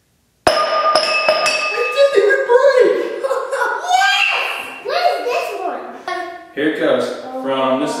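An empty drinking glass dropped from about six feet hits the tarp-covered floor with one sharp clink about half a second in. It rings briefly and does not break, with a few small rattling clicks as it settles, and children's excited voices follow.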